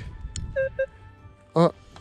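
Metal detector giving a few short beeps, some low and some high, as its search coil is swept over a dug hole and picks up a signal. A single click comes just before the beeps.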